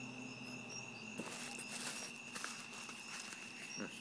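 Crickets trilling steadily, with a soft hiss about a second in.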